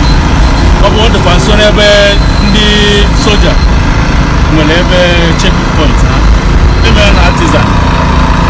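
Steady low rumble of heavy truck engines running close by, under a man talking into a reporter's microphone.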